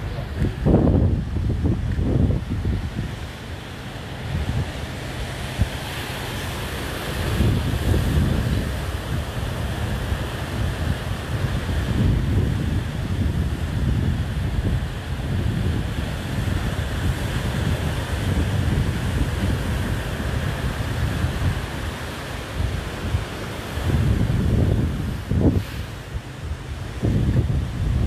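Wind buffeting the microphone in irregular gusts over the steady wash of sea surf.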